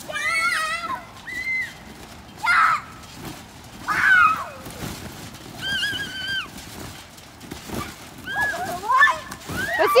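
Children on a trampoline squealing and shrieking with excitement: a string of short, high-pitched wordless calls, one every second or two, with one longer held squeal about six seconds in.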